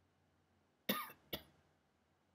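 A man coughing twice, about half a second apart, the first cough longer and louder.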